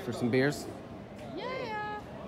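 A brief burst of voices, then near the end a single voice-like call that rises in pitch and is held.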